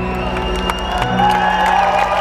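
A live band's held closing chords ringing out, with a large crowd cheering and applauding over them.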